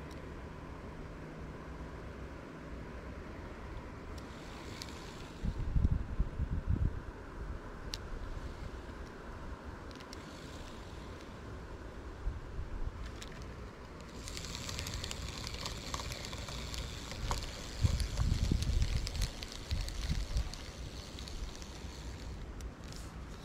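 Wind buffeting the microphone in two gusts, about five and eighteen seconds in, over a steady outdoor background. From about fourteen seconds a steady high hiss joins in.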